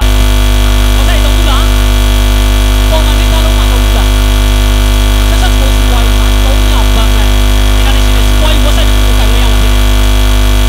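Loud, steady electrical mains hum and buzz that cuts in suddenly, with faint speech barely audible beneath it.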